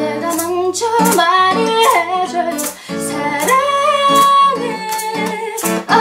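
A woman singing a ballad melody over strummed acoustic guitar, holding one long note about halfway through.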